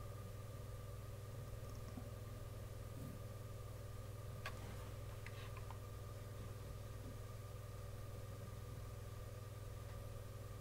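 Quiet room tone: a faint steady electrical hum, with one faint click about halfway through.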